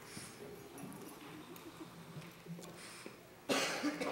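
Quiet room murmur with faint distant voices, then a single loud cough near the end.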